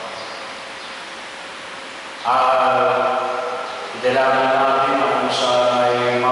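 A priest's voice chanting into a microphone on a nearly level reciting tone: after a quieter first two seconds, two long held phrases follow, the second starting about four seconds in.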